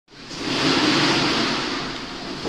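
Steady rushing noise, fading in over the first half second.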